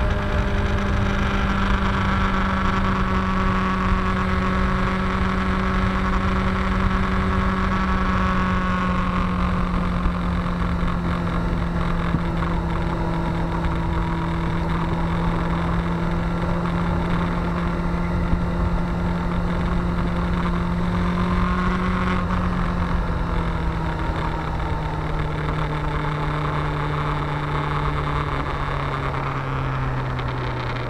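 Honda CBR600 F4i's inline-four engine running steadily under way, with wind and road noise on the bike-mounted microphone. The engine note sinks slowly, then drops lower about two-thirds of the way through and again near the end as the bike slows.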